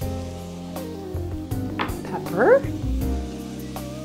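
Sunchoke chunks, carrots and shallot sizzling as they sauté in a stainless steel pot, under background music with long held notes. A short rising voice-like sound comes about halfway through.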